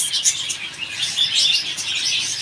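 Many small caged birds chirping and twittering together, a dense run of short high-pitched chirps overlapping one another.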